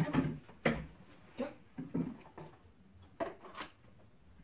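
A few short, separate knocks and clatters of objects being handled and set down on a table, spaced about a second apart.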